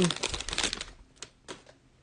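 Plastic cello wrapper of a trading-card pack crinkling as it is torn open and the cards are pulled out. The dense crackle dies away about a second in, followed by a few faint clicks.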